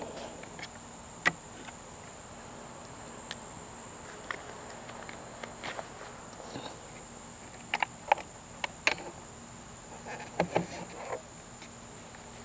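Scattered light clicks and knocks of the plastic battery pack of a Segway miniPRO being unfastened and lifted out by hand, in small clusters toward the second half. Under them, a steady high-pitched insect drone.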